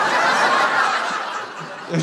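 Audience laughing, loudest at the start and fading toward the end.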